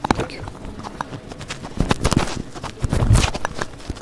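Clip-on lapel microphone being handled and fitted to a shirt: rubbing and irregular knocks picked up by the microphone itself, with the loudest thumps about three seconds in.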